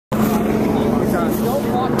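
Several people talking at once over a steady low mechanical hum and a noisy background.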